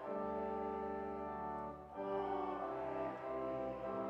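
A church congregation singing a hymn over sustained instrumental accompaniment, held notes changing every second or so, with a short break between phrases about two seconds in.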